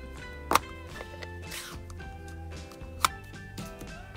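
Soft background music with steady held notes. Two sharp plastic clicks come through it, about half a second in and again about three seconds in, from an ink pad's plastic case being handled and opened.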